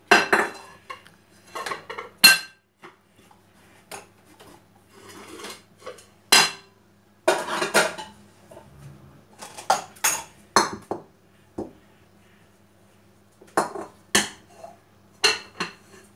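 Dishes and bowls clinking and clattering in irregular knocks as they are handled, wiped with a cloth and set down on the counter and in a plastic dish rack.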